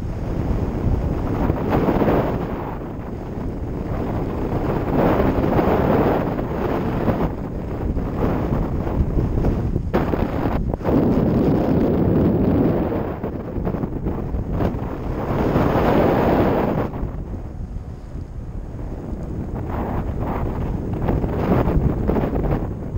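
Wind rushing over a GoPro Session's microphone during paraglider flight, swelling and easing every three to four seconds.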